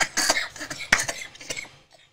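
A woman's breathy laughter in short irregular bursts, tapering off.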